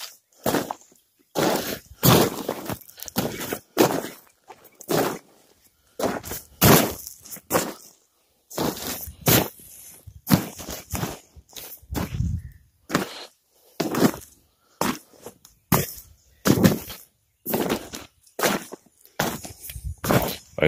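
Footsteps on a deflated vinyl inflatable water slide, about two steps a second in an uneven rhythm, as the trapped air is walked out of it before folding.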